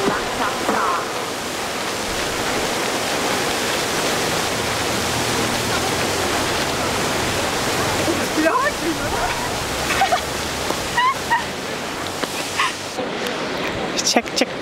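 Fountain jets splashing into the basin, a steady rushing hiss of falling water, with faint voices of passers-by mixed in.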